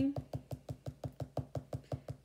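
Pen tip dabbing onto sketchbook paper in rapid, even taps, about eight a second, stippling shading into a drawing one dot at a time.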